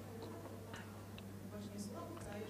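Quiet hall room tone with a steady low hum and a few faint, scattered ticks.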